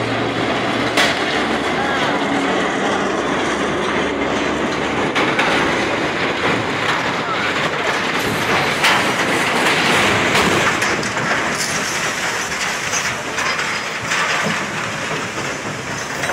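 Floating dry dock and its crane collapsing into the water: a loud, steady clattering rumble of metal, with sharp knocks about a second in and again about nine seconds in.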